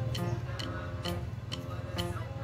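Background music: a melody of short held notes over a low bass, with a steady beat of about two ticks a second.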